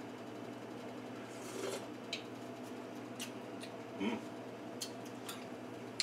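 Quiet kitchen with a steady low hum and a few faint, scattered clicks and knocks from a ladle handled in a stockpot of broth.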